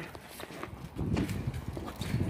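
Footsteps on pavement: an irregular patter of steps, busier from about a second in.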